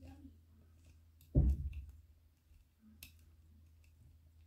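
A few faint, sharp clicks of a small screwdriver working a tiny screw in a plastic model part, spread out with gaps between them, the clearest about three seconds in. One short spoken word about a second and a half in.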